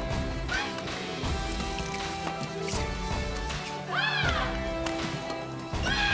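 Background music with a steady low beat and held tones. Two short squeaks that rise and fall in pitch stand out about four seconds in and again at the end.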